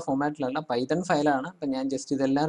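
Speech only: one voice narrating, in short phrases with brief pauses.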